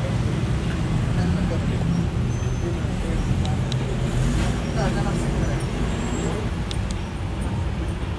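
City street ambience: a steady hum of road traffic with people talking in the background.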